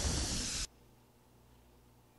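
Loud hissing noise burst from a record label's logo intro sting, stopping abruptly about two-thirds of a second in and leaving near silence.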